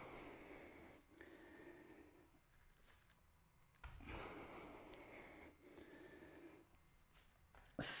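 A man breathing heavily in a few long, faint breaths, the loudest about four seconds in, from the exertion of hopping from a deep squat onto his hands.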